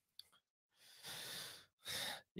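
A man breathing into a close desk microphone: a faint click, then a breath about a second in and a shorter one near the end.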